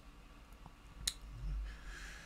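Quiet handling sounds of brushing dry pigment onto a plastic tank model: one sharp click about a second in, then a soft breath.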